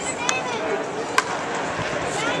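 Fans' voices murmuring, broken by two sharp clicks about a second apart.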